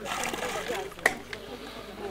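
Bare hands pressing and working damp soil around a sapling's roots: soft rustling and crumbling, with one sharp click about a second in.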